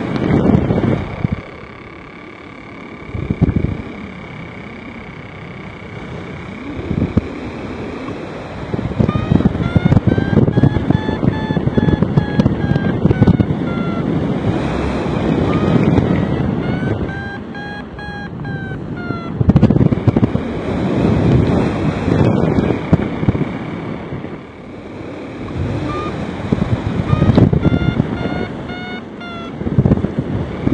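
Wind buffeting the microphone in gusts: a low rumble that swells and drops, quieter for the first several seconds and strongest through the middle and again near the end.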